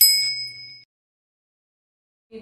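A single bright bell-like ding sound effect marking a section title card: one sharp strike with high ringing tones that fade and cut off abruptly just under a second in.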